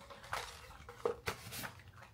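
A few soft clicks and taps of small objects being handled: a box of wooden waxing sticks and a wax warmer pot.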